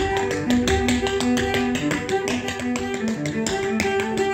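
Tap shoes striking a wooden stage in a fast rhythm of sharp taps, played against a bowed cello line of held notes that change pitch about every half second.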